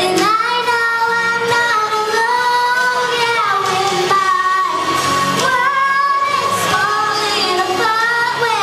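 A six-year-old girl singing into a handheld microphone, holding long notes and gliding between them.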